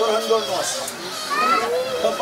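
Several people praying aloud at once, their voices overlapping.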